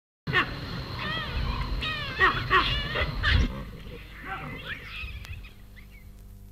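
Primates calling: a run of loud, pitched calls that arch up and down in quick succession, then fainter calls trailing off over the last couple of seconds.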